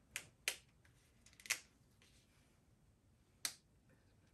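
A large wafer host being broken by hand at the fraction of the Mass: four crisp snaps, three within the first second and a half and a fourth near the end.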